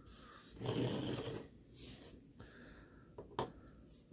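A breathy exhale close to the microphone, then a couple of short, light clicks of plastic Lego models being set down on a table about three seconds in.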